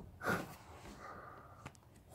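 A man breathing hard, winded from push-ups: a forceful breath about a quarter second in, then quieter breathing.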